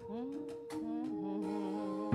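Worship music: voices holding a slow phrase with sliding pitches over sustained organ chords, the drums resting.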